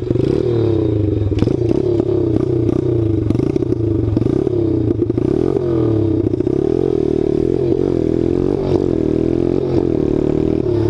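DHZ 110cc pit bike's single-cylinder engine revving hard as it pulls away from the start, its pitch climbing and dropping back again and again as it accelerates.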